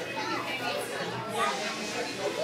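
Background chatter of several people talking nearby, with children's voices among them.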